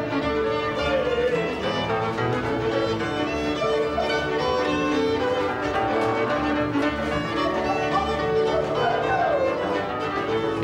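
A fiddle-led string band playing a verbuňk dance tune, in the style of the 'new Hungarian songs', with the violin melody sliding and ornamented above the lower strings.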